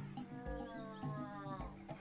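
A giraffe calf's mewing call: one long, drawn-out cry that drops in pitch at its end, over soft background music.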